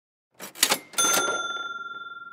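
A quick rattle of mechanical clatter followed by a single bright bell ding about a second in, which rings on and slowly fades.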